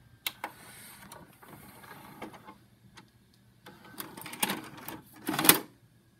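VCR ejecting a VHS cassette: a couple of clicks at the start, then the loading mechanism running for about two seconds. After that comes louder plastic clattering as the cassette is pulled out and handled, loudest near the end.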